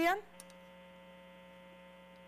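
Steady electrical hum from an open telephone line on a call-in broadcast, a buzz made of many evenly spaced tones with nothing above phone bandwidth. It is the sound of a connected line before the caller speaks.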